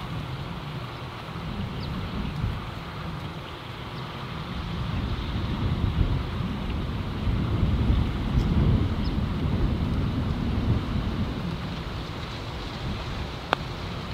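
Wind buffeting the microphone, a low rumble that swells in the middle and eases off. Near the end comes a single light click: a putter striking a golf ball.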